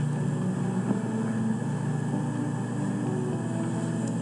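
A steady low drone: several held low tones over an even hiss, with the tones shifting now and then.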